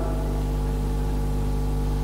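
Steady electrical mains hum with a buzzy series of overtones, unchanging throughout, underlying an old videotape recording.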